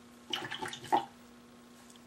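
Paintbrush swished and rinsed in a water container for under a second, a few quick splashy strokes, over a steady low electrical hum.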